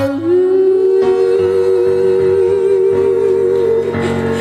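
A woman singing live, holding one long note that rises slightly at the start and then stays steady, over a band's soft accompaniment.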